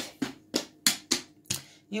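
Draughts pieces being set down and moved on a wooden board, about five sharp separate clicks as an exchange of pieces is played out.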